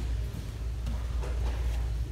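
A steady low rumble with faint background music, and a few soft scuffs as the grapplers move on the mat.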